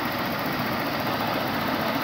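Toyota Revo's gasoline engine idling steadily.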